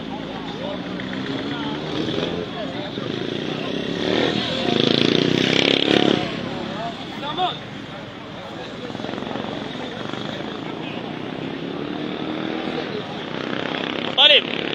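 Crowd noise in a busy street at night: many voices talking and calling out over traffic. It gets louder for a moment about four to six seconds in.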